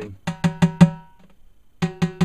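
Fingertip taps on the tensioned bottom (resonant) head of a snare drum near the tension rods, each giving a short pitched ring: four quick taps in the first second, then another near the end. The taps check the pitch at each lug to compare tension; some lugs sound higher and others lower.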